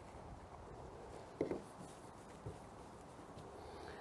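Faint handling sounds of gloved hands dusting flour and working sourdough pizza dough in a small plastic tub: soft rubbing, with a light tap about one and a half seconds in and a fainter knock a second later.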